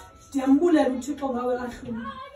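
A woman speaking, starting after a brief lull about a third of a second in.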